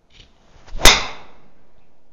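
Golf driver swung and striking a ball: a short rising whoosh, then one sharp crack of impact a little under a second in, fading away afterwards.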